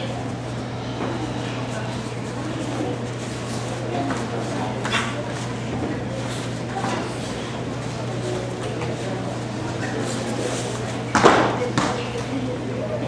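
Hall ambience: a low murmur of voices over a steady low electrical hum, broken by a few sharp snaps or thuds. The loudest comes about a second before the end.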